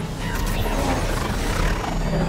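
Dramatic trailer music mixed with the sound effects of a swarm of flying robot drones, over a steady low rumble.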